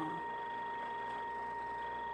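Steady background hiss with a constant high-pitched whine, unchanging throughout; a trailing spoken 'um' just ends at the very start.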